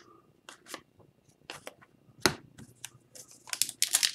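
Hockey trading cards being thumbed through one by one, a series of short, dry flicks and slides of card against card. One sharper snap comes a little past halfway, and the flicks come quicker near the end.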